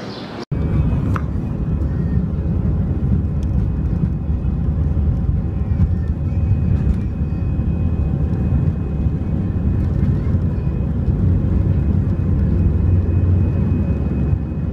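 Airliner cabin noise heard from a window seat: a steady low engine rumble with a faint high hum above it, starting suddenly about half a second in.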